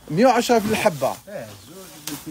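A man's voice speaking in short phrases, with a light rustle of the thin plastic bag wrapped around a stack of quilted bedspreads.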